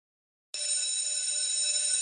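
An electric bell ringing continuously, high and steady, starting about half a second in.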